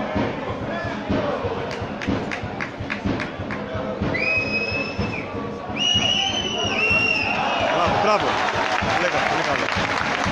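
A referee's whistle over a football crowd: one blast of about a second, then three more in quick succession, stopping play for a foul. The crowd noise swells after the whistles.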